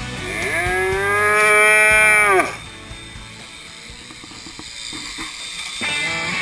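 A calf bawling once, a long call of about two seconds that rises at the start and drops off sharply at the end. Faint clicks and rattles follow.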